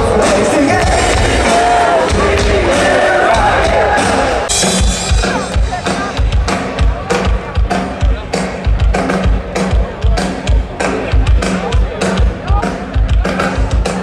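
Live rock band heard through a festival PA. For the first few seconds there is singing over the band. About four and a half seconds in, a fast, steady, hard-hit drum beat takes over.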